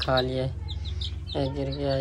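Young chicks peeping: repeated short, falling high cheeps, several a second.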